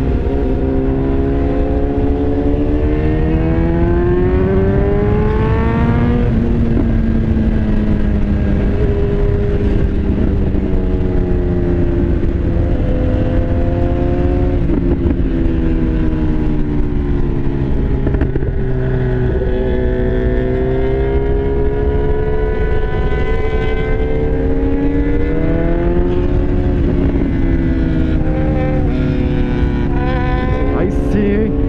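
BMW S1000R's inline-four engine under way on the road, its revs climbing and falling several times through gear changes and throttle for the bends, over steady wind and road noise.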